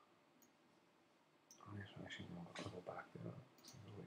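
A few faint, sharp computer mouse clicks, then from about a second and a half in a low, muttered voice with no clear words.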